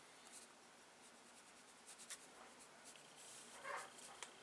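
Faint strokes of a water brush on drawing paper, blending sign-pen colour with water, a little louder near the end.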